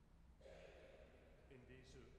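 Near silence with faint room tone. About half a second in, a soft hiss and a breath come in close to a microphone, and a man's voice faintly starts near the end.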